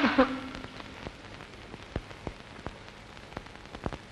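Faint steady hiss with irregular sharp clicks and pops, the surface noise of an old, worn film soundtrack. A voice and splashing die away right at the start.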